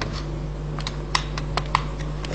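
Screwdriver turning the two blade-holder screws on a metal FC-6S fiber cleaver, loosening them: a scattering of small sharp clicks, about seven in two seconds, over a steady low hum.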